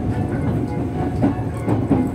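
Electric 'Iroha' train running on the Nikko Line, heard from on board: a steady rumble of wheels on rails with a few clacks in the second half as the wheels cross rail joints.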